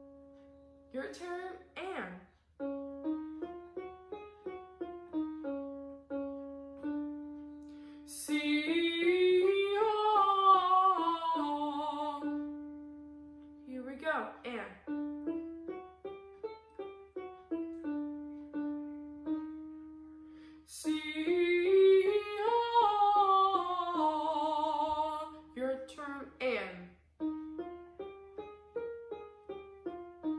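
An electronic keyboard plays a short rising and falling arpeggio pattern, then a woman sings the same arpeggio up and down with vibrato as a vocal warm-up exercise. This happens twice, with a breath between, the pattern starting a half step higher each time, and the keyboard starts the next round near the end.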